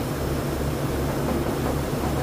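Steady low hum and hiss of room background noise, with a gently pulsing low drone and no distinct events.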